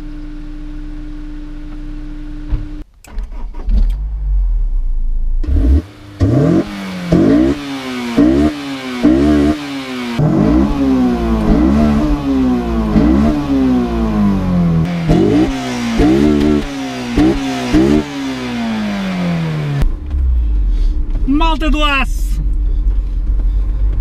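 Honda S2000's naturally aspirated four-cylinder engine idling, then revved repeatedly while standing still. About ten quick blips, each climbing sharply in pitch and dropping back, with a voice near the end.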